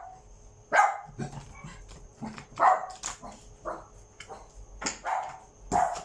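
A dog barking, about five single barks spaced irregularly a second or so apart. Light clicks of playing cards being handled on the table come between the barks.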